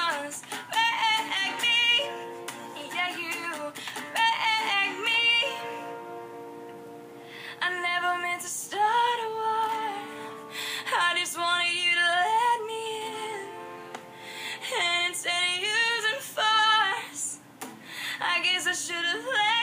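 A woman singing a slow pop ballad in phrases of held, wavering notes, with short breaths between phrases.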